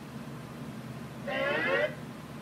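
A short pitched, warbling sound clip of about half a second from the DVD menu, played through the TV's speakers near the end as the menu switches back to the main page. It sits over a steady low room hum.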